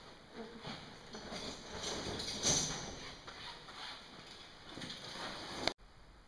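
Irregular scuffing, knocking and rustling of a person moving and handling gear on rock close to the microphone, loudest about halfway through, cutting off suddenly near the end.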